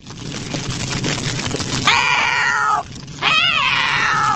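An old woman's long, wavering cartoon cries for help, pitch-shifted to the one note C sharp so that they sound like a cat yowling. The first cry starts about two seconds in, over a steady rushing noise; a falling cry is followed by a wobbling one.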